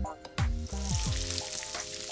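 Rolled pork joint searing in hot fat in a pan: a gentle, even sizzle that starts about half a second in, not spitting.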